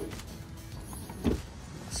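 A fiberglass boat storage compartment lid being lifted open on its gas-assist strut, with one sharp knock a little past halfway.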